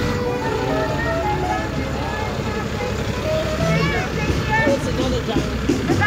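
Volvo FL250 fire engine's diesel engine running low as it drives slowly past, under the chatter of a crowd.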